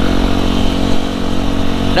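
Yamaha WR155R single-cylinder engine running steadily while cruising, heard from the rider's helmet with road and wind noise over it.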